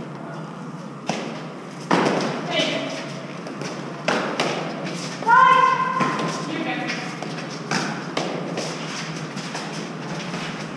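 Eton Fives rally: the ball struck with gloved hands and hitting the court walls, several sharp thumps a second or two apart. A player gives a loud shout about five seconds in, with other short calls between the shots.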